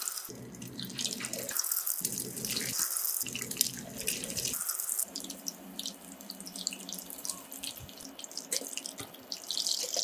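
Egg-coated chicken pieces frying in hot oil in a stainless steel pan: a dense sizzle and crackle, loudest over the first half as the pieces go into the oil, then settling into a quieter, steady sizzle.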